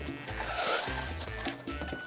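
Background music with a repeating bass beat, over the rasping rustle of glitter-paper sheets being turned and rubbed by hand.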